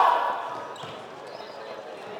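Floorball game sounds in a sports hall: a voice calling out at the start, fading within half a second, then a few sharp knocks of sticks and the plastic ball on the court.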